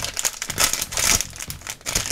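Foil blind bag crinkling irregularly as hands grip and work it open.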